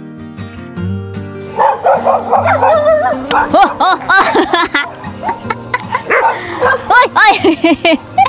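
An animal's excited high calls, short yips and whines that rise and fall in pitch, repeated rapidly from about a second and a half in, over soft guitar music.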